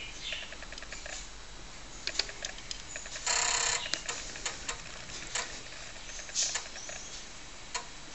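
TRS-80 Color Computer floppy disk drive loading a large program: faint regular ticking from the drive, with a few sharper clicks and a half-second buzz a little over three seconds in.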